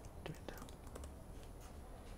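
Faint computer keyboard keystrokes, a few separate clicks as the last letters of a query are typed and it is entered, with a quiet murmured word near the start.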